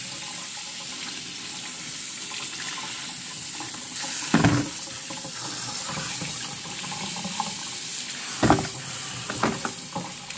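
Kitchen tap running steadily into a stainless steel sink as sweet potatoes are rinsed by hand under the stream. A few sharp knocks stand out, about four seconds in and again near the end.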